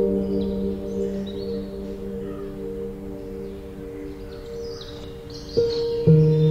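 Background music: soft, held notes that slowly fade, with a new chord coming in near the end.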